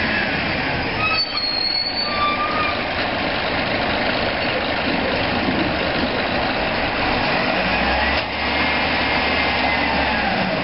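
Maxon Legal One automated side-loader garbage truck running while its hydraulic arm cycles to pick up a cart. A short high squeal comes about a second in, a deeper engine hum sets in near the end, and a rising-then-falling whine comes late on.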